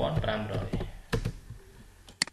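A few sharp keystrokes on a computer keyboard, typing a number into a drawing program; the strongest click comes about a second in.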